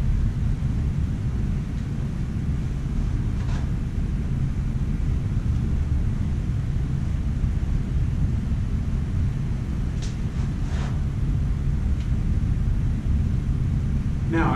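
Steady low background rumble, with a few faint scuffs of footsteps on carpet as a man walks and turns, about three seconds in and twice around ten seconds in.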